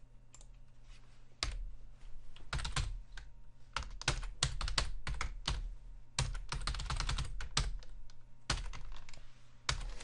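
Typing on a computer keyboard: irregular runs of key clicks, which start in earnest about a second and a half in.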